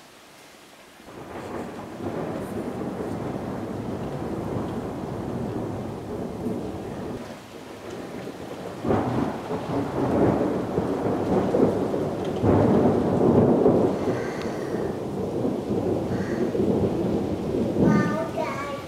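A long roll of thunder over rain: the rumble begins about a second in and swells louder in the second half.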